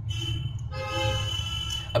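A steady pitched tone with overtones sounds twice, briefly and then for about a second, over a low steady hum.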